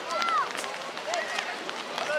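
Young children's voices calling and shouting on a football pitch in short high rising and falling cries, with a few short sharp clicks among them.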